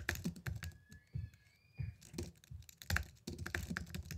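Typing on a computer keyboard: quick runs of keystroke clicks, thinning out briefly about a second in before picking up again.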